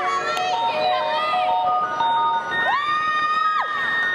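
Audience cheering and shouting, many voices calling out in short rising and falling cries, with one long held cry near the end.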